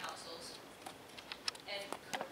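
Irregular sharp clicks of typing on a laptop keyboard, under fragments of a woman's speech.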